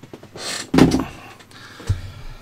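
A person coughing once, a short breath-like hiss followed by a sudden burst about three-quarters of a second in. A brief low thump near the end as a gloved hand touches the meter on the bench.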